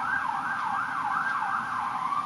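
Emergency vehicle siren in a fast up-and-down yelp, about three sweeps a second, switching near the end to a slow rising wail.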